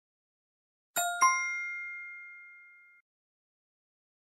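A two-note chime sound effect: two quick dings about a second in, a fifth of a second apart, ringing out and fading over about two seconds. It is the quiz's answer-reveal chime as the countdown runs out.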